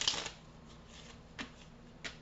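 Tarot cards being shuffled by hand: a short burst of cards riffling and slapping together at the start, then a single short card tap about a second and a half in.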